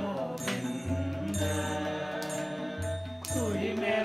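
Devotional mantra chanting sung to a melody over a steady low drone, with a sharp percussion strike about once a second.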